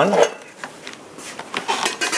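Sheet-metal access cover being taken off the upper thermostat of an electric water heater: a few light metallic clicks and a short scrape.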